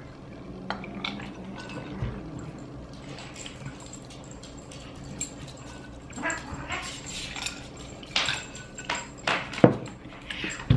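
Two people drinking cola from a plastic bottle and a glass with ice: sips and swallows, breathy noises, and a few small clicks and knocks. Near the end come several sharper knocks, the loudest as the glass is set down on the table.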